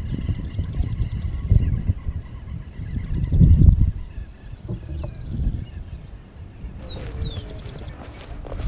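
Wind buffeting the microphone in irregular gusts, strongest about three and a half seconds in. Small birds sing over it, with short falling whistles and a rapid trill near the end.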